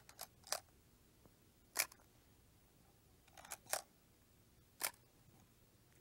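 Single-lens reflex camera shutter clicking, about six short clicks in pairs and singles spread over a few seconds.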